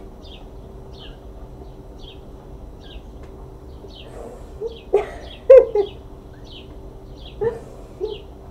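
A small bird chirping over and over, short high chirps about once or twice a second, over a steady low hum. Around five seconds in come two brief, much louder sounds with a pitch to them.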